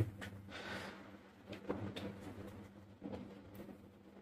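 Quiet handling of small wires and an alligator clip: a few faint, small clicks as the leads are clipped together, with a soft breath about half a second in and a faint low hum underneath.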